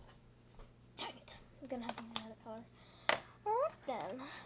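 A girl's voice making short unworded sounds, with a few sharp clicks, over a steady low hum.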